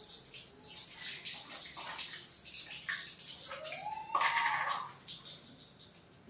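Milk poured from a copper pot splashing and trickling over a stone Shivling and its base, dying away near the end as the pouring stops. About four seconds in, a short high note rises and then holds for under a second.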